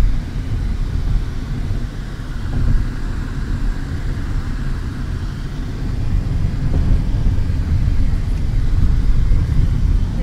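Car driving at highway speed, heard from inside: a steady low rumble of tyre and engine noise that grows a little louder in the second half.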